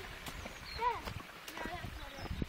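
A short rising-and-falling voice call a little under a second in, with fainter vocal sounds and a few footstep clicks on the lane.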